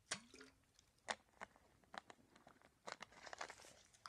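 Faint, scattered crinkles and clicks of a thin plastic water bottle being drunk from and handled, with a brief throat sound at the very start.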